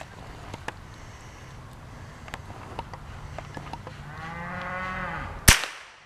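A single .22 rifle shot about five and a half seconds in, a sharp crack and the loudest sound by far. Before it comes a low drawn-out call lasting about two seconds, with a few faint clicks.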